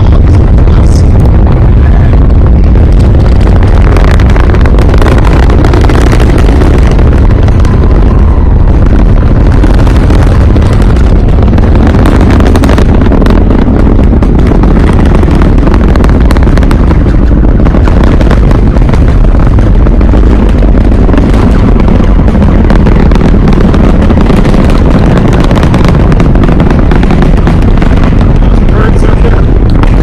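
SpaceX Falcon Heavy's 27 Merlin engines heard during ascent: a loud, steady low rumble with crackle.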